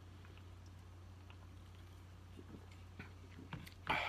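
A man drinking soda from a can: faint swallows and small soft clicks over a steady low hum, with a short louder sound near the end as the can comes down.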